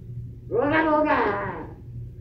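A person's voice letting out one long, loud cry that rises and then falls in pitch. It starts about half a second in and lasts a little over a second.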